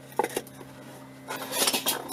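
Two light metallic clinks, then a brief high rustle near the end, over a steady low hum.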